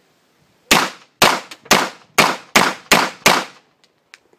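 Fort-12G 9 mm P.A.K. gas pistol fired seven times in quick succession, about two shots a second, each shot a sharp report with a short ring-out. The pistol cycles and fires every round without a misfire.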